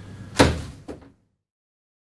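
A loud hollow plastic thunk from handling the lawnmower's grass collection basket, followed half a second later by a lighter knock; then the sound cuts off abruptly.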